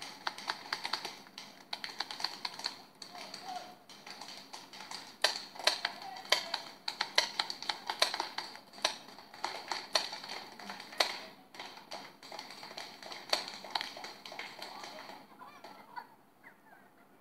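Paintball markers firing: sharp pops in irregular strings, several a second at times and loudest in the middle stretch.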